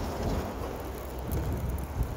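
City street traffic noise, with a car driving past close by and a low rumble of wind on the microphone.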